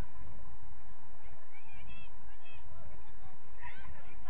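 Short honking bird calls, several in a row about halfway through and more near the end, over a steady low wind rumble on the microphone.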